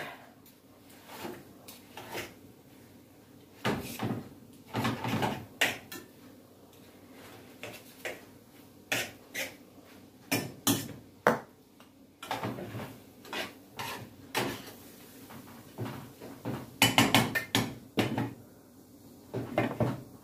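Metal utensils clinking, knocking and scraping against a skillet as pieces of beef are cut up and turned in the pan. The clicks come in irregular clusters with quieter gaps between.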